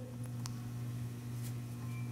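Quiet room tone with a steady low hum, and one faint click about half a second in.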